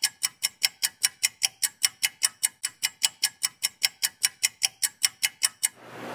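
A fast, even clicking: sharp, high-pitched ticks at about five a second, with no guitar notes among them. The clicking stops shortly before the end.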